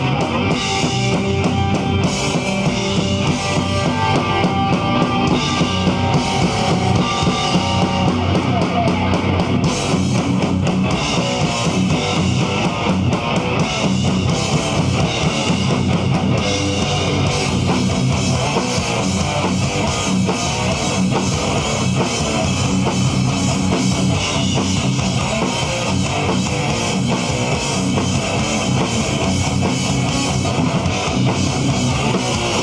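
Live hardcore band playing loud and steady: distorted electric guitar and bass guitar over a drum kit. Held guitar notes ring over the riff for the first several seconds.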